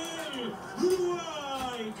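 Speech only: a voice talking at a moderate level, with no other sound standing out.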